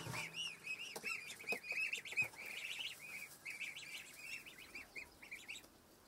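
A group of goslings peeping, many short high chirps in quick overlapping succession, thinning out near the end.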